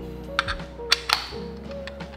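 Background music throughout, with four sharp clicks in the first second or so as the crank handle of a 1Zpresso Q Air hand coffee grinder is fitted onto the grinder.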